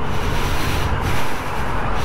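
Yamaha XSR900's three-cylinder engine running under way, mixed with steady wind rush on the rider's helmet microphone.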